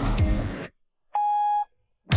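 Beat-driven music with guitar cuts off abruptly under a second in. After a short silence, a single steady electronic beep sounds for about half a second.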